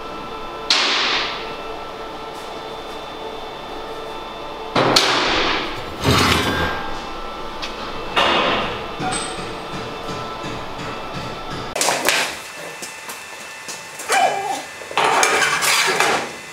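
Metal clanking: a welded steel bracket and tools knocking against a steel trailer frame, about six separate knocks, each with a short ringing tail.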